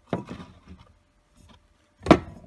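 Metal aerosol spray can handled on a wooden cabinet shelf: a sharp knock as it is grabbed and bumps the neighbouring cans, then lighter clinks and scrapes that fade, with one small click near the end.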